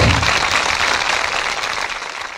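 Audience applauding, a dense patter of clapping that gradually gets quieter.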